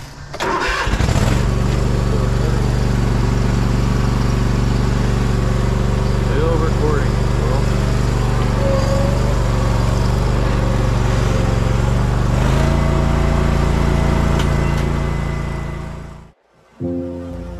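An engine starts about a second in and then runs steadily at idle. Its note shifts lower near the end.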